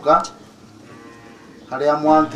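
A man's voice speaking into a handheld microphone: a short syllable, a pause of over a second, then a long drawn-out vowel starting near the end.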